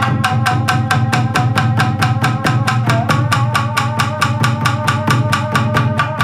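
Tsugaru shamisen played fast and hard with a large plectrum, each stroke a sharp percussive snap of the strings against the skin-covered body, about six strokes a second in an even driving rhythm. One note slides upward about three seconds in.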